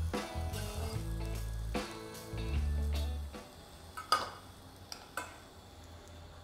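Background music with long low bass notes, then two sharp clinks of a metal spoon against the pot, about four and five seconds in.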